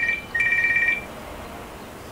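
Electronic telephone ringer trilling on two tones in a double ring. One ring ends just after the start and a second follows at once, ending about a second in.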